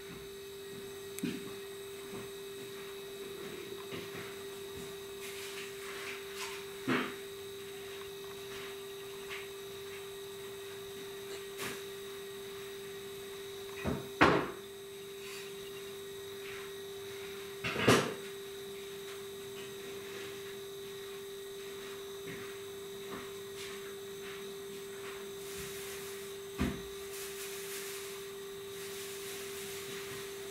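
A steady hum, with a few short knocks scattered through it, the loudest two about fourteen and eighteen seconds in.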